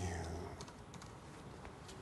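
Faint scattered light clicks and taps, with a low hum in the first half second.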